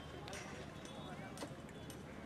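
Outdoor worksite ambience: faint distant voices and irregular light knocks and clanks, about four in two seconds, from workers putting up steel-frame tents.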